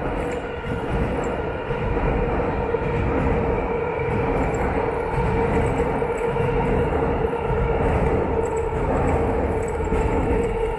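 A train running over the steel elevated railway bridge overhead: a loud, steady rumble with a constant humming tone.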